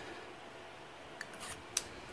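Three faint, sharp metallic clicks in the second half as a gold-finish Parker 75 rollerball pen is handled.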